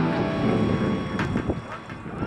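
Guitar music cuts away into open-air noise: a steady rush of wind on the microphone and road traffic, with faint voices.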